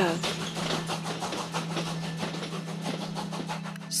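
Train sound effect: a fast, even clattering rhythm over a steady low hum, like train wheels running on track, fading slightly toward the end.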